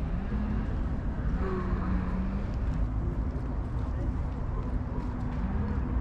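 Wind buffeting the microphone in a steady low rumble, with faint murmured voices now and then.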